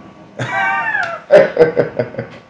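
Laughter: a high-pitched vocal squeal that falls in pitch, then a few short bursts of laughing.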